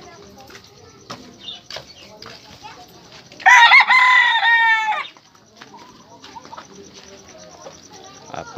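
A rooster crows once, loud, for about a second and a half starting around three and a half seconds in, the call breaking into a wavering tail at the end. Quieter clucks and small knocks come and go around it.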